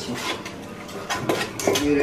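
Several short, sharp clinks and knocks, a handful of separate strikes spread through the two seconds, of the kind made by handling dishes or cutlery.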